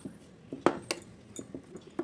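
Flour dough being kneaded by hand in a bowl: irregular knocks and clicks as the dough and hands strike the bowl, the sharpest about two-thirds of a second in.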